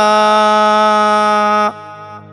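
A Buddhist monk chanting Sinhala seth kavi blessing verses, holding one long steady note at the end of a line that stops abruptly about one and a half seconds in, leaving only a faint background tone.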